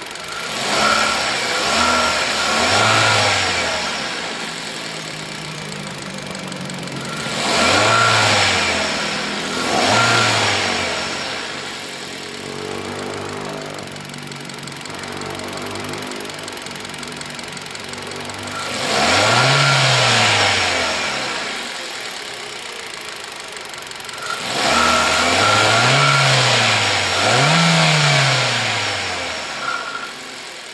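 A 2014 Kia Rio's 1.6-litre four-cylinder engine idles under the open hood and is free-revved about six times. Each blip rises and falls quickly in pitch before settling back to idle, with two blips close together near the end.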